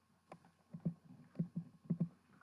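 A series of soft, irregular low knocks and bumps, about seven in two seconds.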